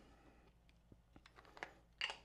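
Near silence with a few faint clicks in the second half: a Nikkor Z 35mm f/1.8 S lens being twisted off a Nikon Z7's bayonet mount and handled.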